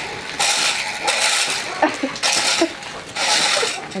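A metal leaf rake scraping over packed dirt and straw in about four sweeping strokes.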